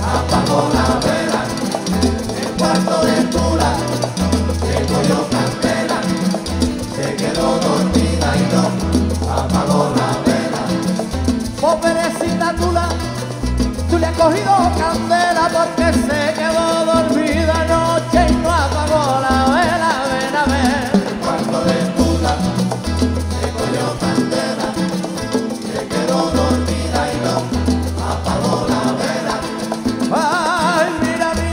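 Live Latin son/salsa-style band of acoustic guitars, small plucked string instruments and congas playing an upbeat song with a steady bass pulse. A man sings lead into a microphone, most clearly through the middle of the stretch.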